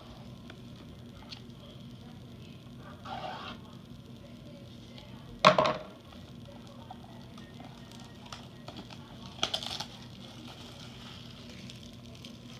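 A cardboard trading-card hobby box is set down on a wooden table with one sharp thump about five and a half seconds in. Brief handling rustles come about three seconds in and again near ten seconds, over a faint steady hum.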